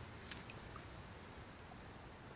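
Faint, steady outdoor hiss as a spinning rod is cast, with one short sharp click about a third of a second in and a few tiny faint ticks after it.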